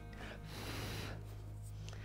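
Faint background music over a steady low hum, with a short, soft intake of breath about half a second in.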